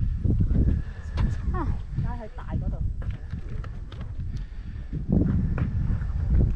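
Wind rumbling on the microphone in gusts, with a person's voice heard briefly around two seconds in.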